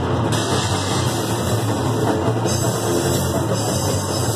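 Grindcore/powerviolence band playing live: distorted electric guitar, bass and drum kit in a loud, dense, unbroken wall of sound.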